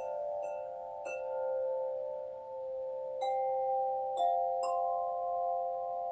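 Tuned chime tubes on a hand-held frame struck one at a time with a mallet: six strikes, three close together at the start and three more after a pause of about two seconds. Each note rings on and overlaps the others in a sustained chord.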